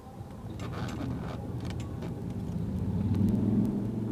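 Car engine and road noise heard from inside the cabin, a low rumble that grows steadily louder over the first three seconds as the car picks up speed.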